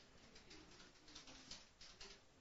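Near silence, with faint scratching strokes of a marker pen writing on a whiteboard.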